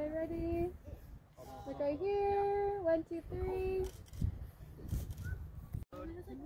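A high voice singing four long held notes in a short phrase, the longest held steady for about a second in the middle; the singing stops about four seconds in.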